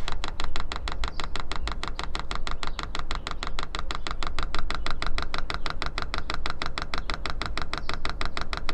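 Electric fuel dosing pump of a 24-volt Chinese diesel parking heater ticking rapidly and evenly, about ten clicks a second, while it runs in manual fuel-fill mode: it is priming the fuel line and purging air bubbles toward the heater.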